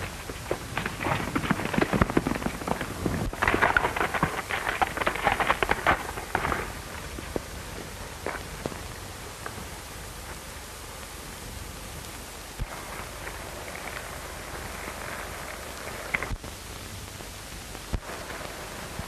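Horses' hoofbeats on dry ground: a dense run of clicks and knocks for the first several seconds, then fainter and sparser. Under them runs the steady hiss of an old optical film soundtrack.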